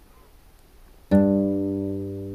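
Classical guitar, the sixth and second strings fretted at the third fret (a low G and a D) and plucked together once about a second in, then left ringing and slowly fading.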